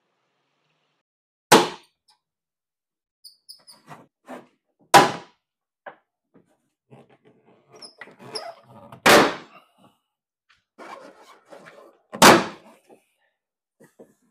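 Plastic clips of a liftgate interior trim cover popping loose as the cover is pried off, four sharp snaps a few seconds apart, with smaller clicks and plastic rattling between them.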